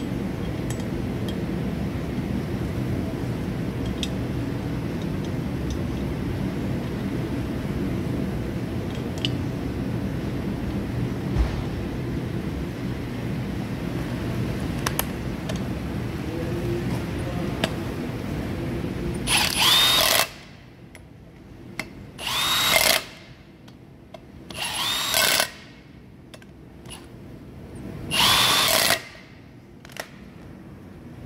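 Power drill-driver running in the bolts that fasten a brake disc to its hub: four short bursts in the last ten seconds or so, each spinning up quickly in pitch and then stopping.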